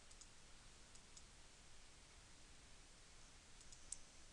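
Near silence with faint room hiss and a few faint computer mouse clicks, the clearest just before the end.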